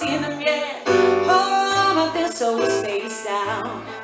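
A woman singing live into a microphone while playing a stage keyboard: a melody line over held chords and low bass notes that change every half second or so.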